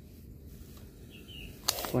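Quiet outdoor background with a couple of faint bird chirps about a second in, then a short, loud hiss shortly before the end.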